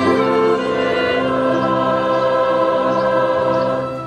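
Choir of mixed men's and women's voices singing a hymn in long, held notes, the final chord beginning to fade out at the very end.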